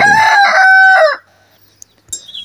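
Desi rooster crowing: the held end of one long crow, which drops off and stops a little over a second in.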